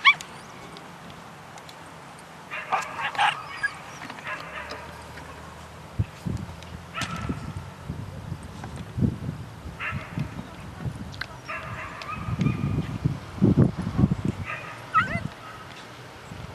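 Puppies yipping and whining in short high-pitched bursts, several times over. Low rumbling thuds come in between, loudest in the second half.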